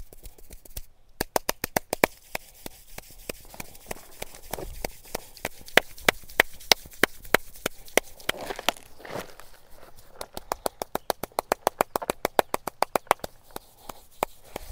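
Hair cracking during an oiled head massage: the masseur's fingers pull and snap strands of wet hair close to the microphone, making rapid sharp cracks, several a second, with a brief softer rubbing sound about halfway through.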